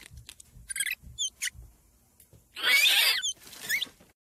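A mouse squeaking from cover: several short, high squeaks that glide up and down in pitch, with one louder rasping burst a little past the middle.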